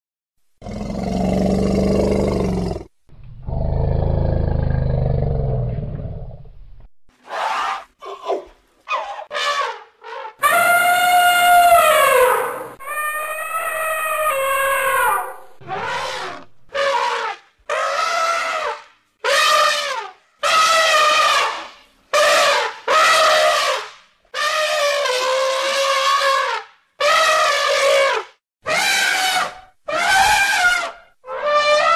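Wild African elephants calling: two long, low calls first, then trumpeting, with a couple of long trumpet blasts that rise and fall in pitch followed by a run of short blasts about one a second.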